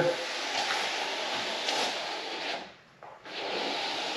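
Notched plastic Bondo spreader being dragged through wet epoxy resin, a steady rubbing, scraping hiss that breaks off briefly about three seconds in.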